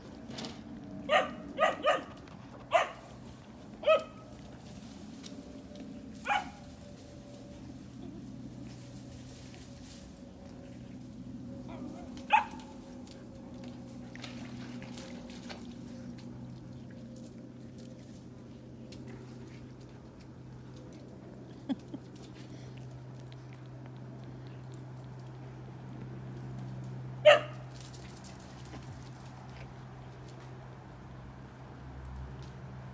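Dogs barking at play: a quick run of short single barks in the first four seconds, lone barks at about six and twelve seconds, and one loud bark near the end.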